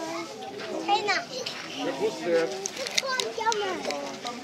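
Several children's voices chattering and calling out, high-pitched and overlapping.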